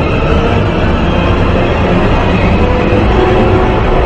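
Loud, continuous rumbling noise with a few sustained droning tones over it, part of a dark, dramatic soundtrack.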